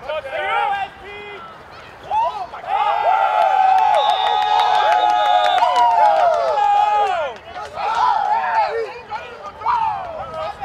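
Several men yelling and shouting over one another on a football field during a play. The voices are loudest and most crowded in the middle, with some long held high-pitched yells.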